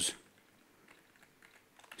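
A few faint computer keyboard clicks over quiet room tone, just after a man's voice breaks off at the start.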